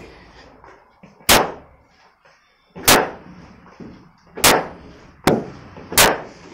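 Cricket bat striking a cricket ball hung on a string, one sharp knock about every second and a half, four in all, with a lighter click between the last two.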